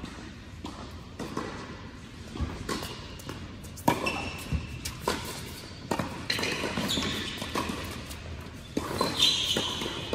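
Indoor tennis doubles rally: a string of sharp racket-on-ball hits and ball bounces on a hard court, echoing in a large hall, with players' footsteps.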